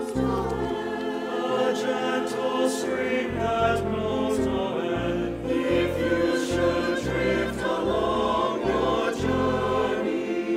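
A mixed church choir sings a hymn-like anthem with instrumental accompaniment, a low bass line moving note by note underneath.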